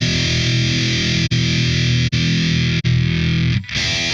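Distorted electric guitar chords from a Driftwood Purple Nightmare preamp into a Two Notes Torpedo CAB M+ cabinet simulator loaded with a V30 cabinet impulse response, ringing with a few brief breaks.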